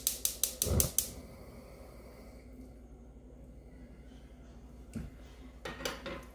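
Gas stove burner's spark igniter clicking rapidly, about six clicks a second, then the burner lighting with a soft low thump about a second in. A couple of light knocks near the end.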